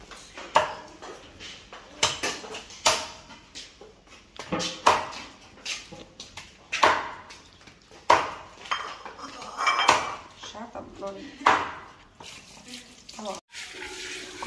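Kitchen-counter clatter: sharp knocks and clinks of a utensil and dishes against a metal tray and board while roasted duck is handled, coming irregularly every second or two, with voices now and then.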